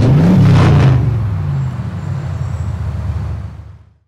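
Car engine revving up and dropping back once, with a short hiss just under a second in, then a steady run that fades out toward the end.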